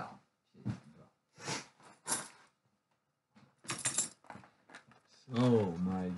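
A man's voice without clear words: a few short breathy, noisy sounds spaced out through the first four seconds, then a louder drawn-out vocal sound with a wavering pitch starting about five seconds in.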